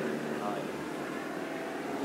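A light aircraft flying overhead, its engine sound steady as it passes over.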